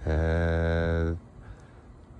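A man's low voice holding a single steady, chant-like note for about a second, then breaking off.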